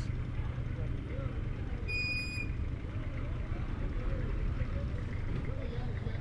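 Low, steady rumble of vehicle engines idling in the street, with faint voices of people in the background. A short, high beep sounds once about two seconds in.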